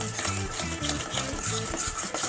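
Thick chocolate icing being stirred in a stainless steel mixing bowl, with the utensil scraping round the metal in repeated strokes.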